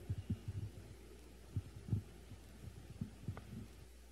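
Handling noise from a live handheld microphone being carried and set into the clip on its stand: irregular dull thumps and rubs, with a sharper click a little over three seconds in. The low rumble cuts off just before the end.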